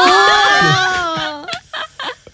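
Young women shrieking with laughter: one long high-pitched peal for about a second and a half, breaking into a few short breathy bursts.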